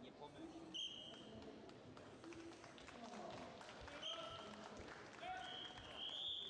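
Indistinct voices in a large hall, at a low level, with three short high-pitched tones about one, four and five seconds in.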